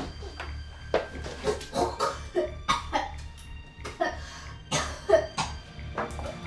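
Irregular clinks and knocks of kitchenware being handled, some ringing briefly, over a low steady hum.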